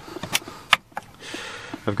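Overhead storage cabinet door being opened by its handle, with two sharp latch clicks, the louder one about three-quarters of a second in, and some light handling rattle.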